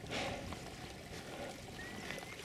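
Small moorland stream trickling over stones, faint and steady.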